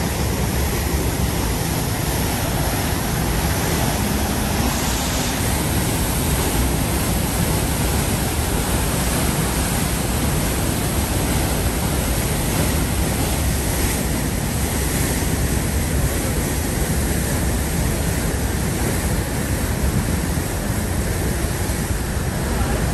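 The Rhine Falls at close range: a steady, loud rush of falling and churning water that does not let up.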